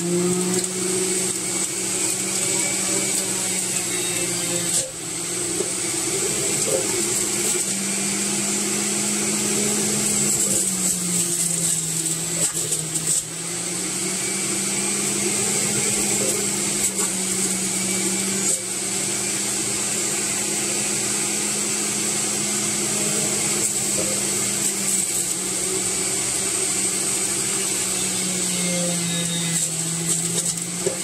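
Electric centrifugal juicer running steadily with a high whine. Its motor pitch sags a few times as celery is pushed down the feed chute against the spinning cutter, then recovers.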